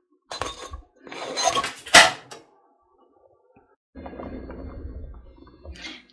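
Clattering of a pot and dishes as a thin crisp sheet of amala is lifted from a non-stick pot, with a sharp clink about two seconds in. After a short silence a faint steady low hum follows.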